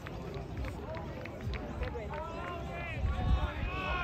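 Unintelligible shouts and calls from rugby players and sideline spectators, growing louder and more frequent from about halfway through as play breaks from the scrum. A low rumble comes in near the end.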